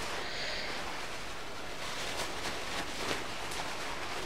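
Soft rustling of a crinkled heko obi sash as its bow loops are fluffed out by hand, a few faint brushes over a steady background hiss.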